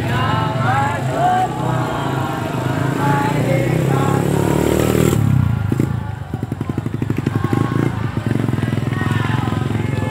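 Voices of the walking group singing or calling out in the first half, then a motorcycle engine close by, its exhaust beating in a fast, even pulse through the second half.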